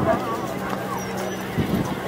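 Chatter of a crowd of people walking across a suspension footbridge, with their footsteps knocking on the deck. A low steady hum runs under it and drops out just before the end.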